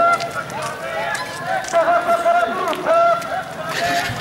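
Protest marchers shouting slogans, several voices overlapping in short, repeated calls.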